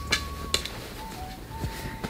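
Faint background music: a few slow, held notes stepping down in pitch. Two light clicks in the first half second from a clothes hanger being handled.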